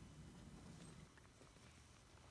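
Near silence: faint background noise with a low hum that stops about halfway through, then a few faint ticks.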